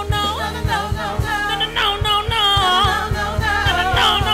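Live band music: a woman singing lead over Yamaha Motif keyboard chords, bass and a drum kit with steady kick-drum beats.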